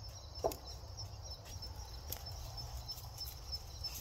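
An insect chirping in a steady, even high-pitched pulse, about four pulses a second, over a low rumble of wind. A short, louder sound comes about half a second in.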